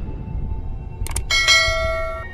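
Outro jingle over a low steady rumble, with two quick clicks just after a second in, then a bright bell chime struck that rings on in several steady tones.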